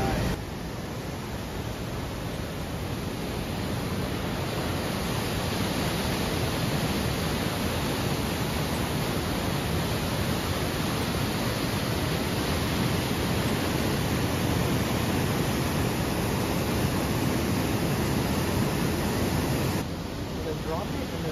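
A creek rushing over rocks at a small waterfall: a steady, even rush of water that grows a little louder over the first few seconds, then holds.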